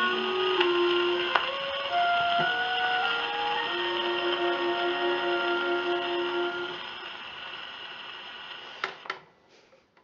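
The closing bars of a tenor aria with orchestra, played from a 78 rpm shellac record on a portable wind-up gramophone, with steady surface hiss, dying away over the last few seconds. Near the end come a few sharp clicks as the soundbox and needle are lifted off the record.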